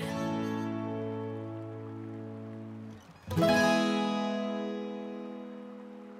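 Background music on acoustic guitar: two strummed chords, one at the start and a louder one about three seconds in, each left to ring out and slowly fade.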